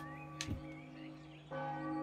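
Soft film soundtrack music: a sustained bell-like chord that swells as more tones join about one and a half seconds in, with faint high chirps early on.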